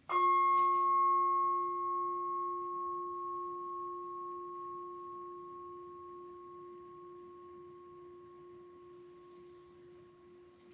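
Altar bell struck once at the elevation of the chalice after the consecration, ringing out with a low and a higher steady tone that fade slowly over about ten seconds.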